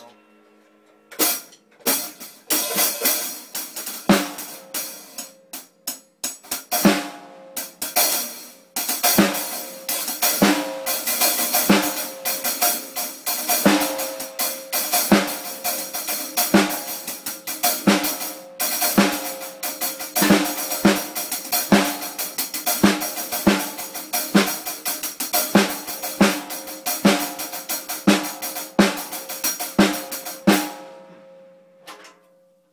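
Acoustic drum kit played with sticks and no bass drum: snare, toms, hi-hat and cymbals. It starts about a second in with scattered hits and fills, then settles from about nine seconds into a steady groove, cymbals ringing continuously over a strong snare stroke about every three-quarters of a second.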